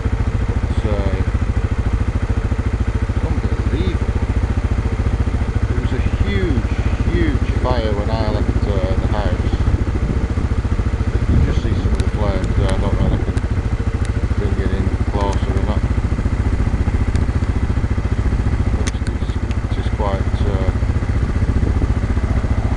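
A steady, low engine drone with fine, rapid pulsing, with people talking in the background at times.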